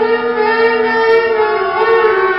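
Clarinet and bass clarinet holding long, overlapping, voice-like tones in a free improvisation, with pitches sliding against each other; the lowest held note stops about halfway through.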